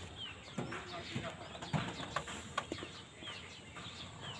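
Short, falling bird chirps repeating every second or so, with a few sharp knocks in the middle and faint voices in the background.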